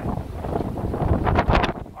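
Gusty wind buffeting the microphone: a low, rushing noise with no steady tone, swelling about a second and a half in.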